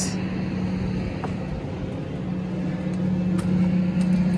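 A steady low hum from a running engine or motor, with a few faint clicks.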